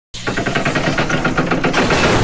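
Intro sound effect: a rapid, even train of mechanical clicks, about ten a second, like clockwork gears ratcheting, swelling into a whoosh near the end.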